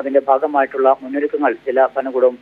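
Speech only: a voice talking continuously, with no other sound.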